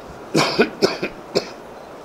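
A man coughing: about four short, sharp coughs in quick succession within a second.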